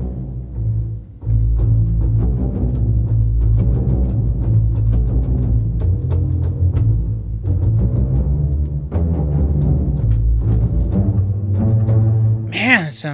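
Spitfire Audio Epic Strings orchestral sample library playing deep, low-register string notes with a heavy bass end. The notes break off briefly about a second in, then continue loud and sustained, shifting between notes.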